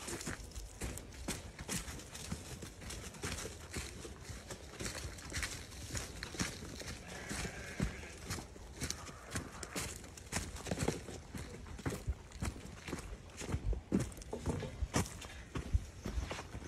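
Footsteps crunching and crackling through dry fallen leaves at a walking pace.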